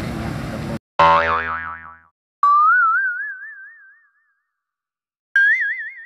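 Three cartoon "boing" sound effects, each a wobbling tone that rises a little and fades out, the first about a second in and the last near the end. Before them, roadside traffic noise cuts off abruptly.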